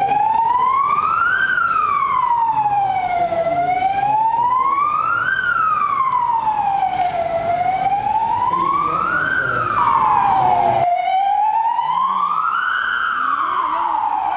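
Belgian Red Cross ambulance siren sounding a slow wail, rising and falling in pitch about every four seconds, as the ambulance sets off on an emergency call. The background noise underneath cuts out abruptly about eleven seconds in while the siren carries on.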